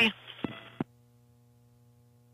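Launch-commentary radio feed going quiet at the end of a transmission: a faint hiss with two clicks, then the channel cuts off sharply, leaving a faint steady hum.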